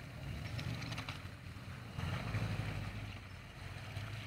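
Jeep Grand Cherokee engine pulling under load as the SUV crawls over a dirt mound off-road, a low rumble that swells about halfway through.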